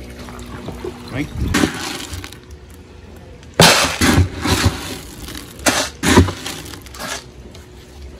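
A plastic scoop digging into a bin of dry fish-food pellets, the pellets rattling and scraping in several short bursts, loudest about three and a half seconds in.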